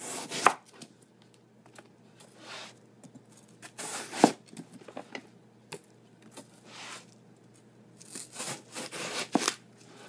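A big chef knife slicing the rind off a watermelon, one downward stroke after another, a second or two apart. Some strokes end in a sharp knock as the blade meets the cutting board, loudest about four seconds in.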